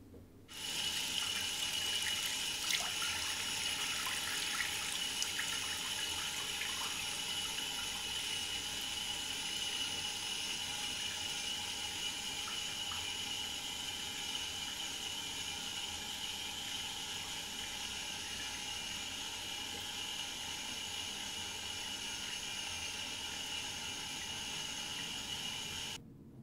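Running water: a steady rush that starts suddenly about half a second in and stops abruptly at the end.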